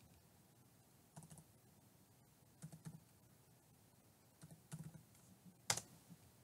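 Faint computer keyboard typing: a few short clusters of keystrokes against near silence, with one sharper click near the end.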